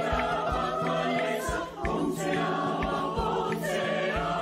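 Mixed choir of women's and men's voices singing in harmony over a steady percussion beat, with low thuds and light clicks about twice a second. The voices break off briefly a little under two seconds in, then go on.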